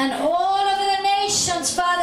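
A woman singing wordlessly into a headset microphone: the pitch slides up into one long held note with a slight waver, then breaks into shorter notes near the end.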